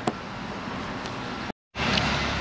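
Steady background noise of a workshop, with one short click near the start; the sound drops out completely for a moment about one and a half seconds in, then returns a little louder.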